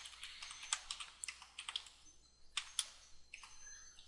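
Faint typing on a computer keyboard: a quick run of key presses, a short pause, then a few more keystrokes.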